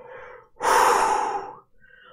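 A woman's sharp, loud breath through the open mouth, a gasp lasting about a second, starting about half a second in.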